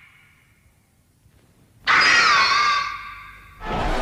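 Godzilla roar sound effect: a loud, high screeching cry with a bending pitch starts about two seconds in and lasts nearly two seconds. A faint ringing tone fades out at the start, and a lower, steadier sound begins near the end.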